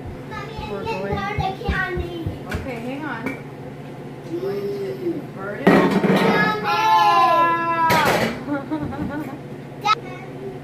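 Children's voices in the house, one calling out loudly and high-pitched for about two seconds past the middle, its pitch falling at the end. Low knocks and a sharp clatter of kitchen handling come with them, over a steady low hum.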